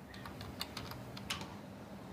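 Fingers typing on a computer keyboard: a quick, uneven run of about ten key clicks as a password is entered.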